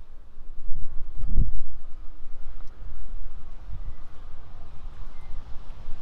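Low rumble of wind and handling on the phone microphone, with a dull thump about a second and a half in and a weaker bump near four seconds.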